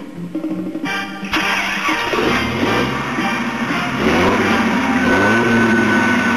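Background music with a car engine sound effect that comes in suddenly about a second in and climbs gradually in pitch, like a car revving and pulling away.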